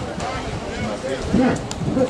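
Speech: a voice talking in Greek, with a short "Ναι" (yes) about one and a half seconds in.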